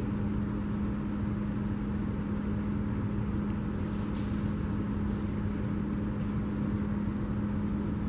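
Steady room tone: a constant low hum with a rumble beneath it, unchanging throughout.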